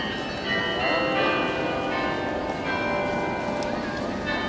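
Church bells ringing, several bells sounding over one another in a continuous peal, with crowd voices underneath.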